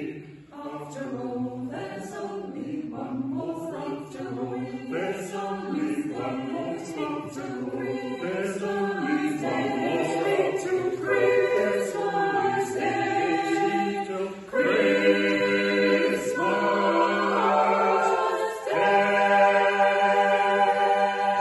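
A mixed choir singing, the lines moving at first and then settling into long held chords for the second half, with a short break about two-thirds of the way through.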